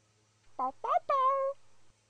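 Domestic cat meowing three times in quick succession; the first two are short and rising, and the last is longer, falling, then held.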